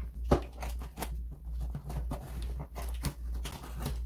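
Scissors cutting along the packing tape on a cardboard box: a run of short snips and scrapes, the sharpest one about a third of a second in.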